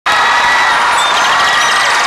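A crowd cheering and clapping, with shouts over steady applause.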